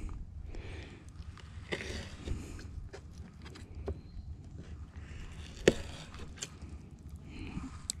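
Pocket knife cutting raw rabbit meat on a cutting board: soft scraping and handling noises with a scattering of sharp knocks of the blade on the board, the loudest about two-thirds of the way through, over a low steady rumble.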